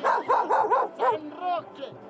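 Dog barking rapidly, about four barks in the first second, then a couple of fainter, higher yelps.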